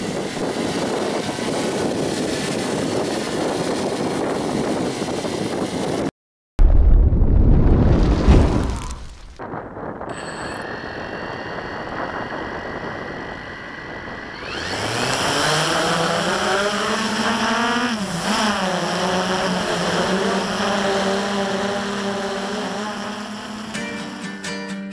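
Small quadcopter's propellers running with a steady noisy hum, broken by a loud low rumble lasting a couple of seconds. From about halfway through, its four motors spin up with a rising whine, dip once and settle into a steady pitched hum.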